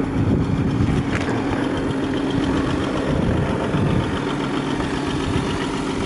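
Audi Q7's 3.0-litre V6 TDI diesel engine idling steadily, heard from outside the car.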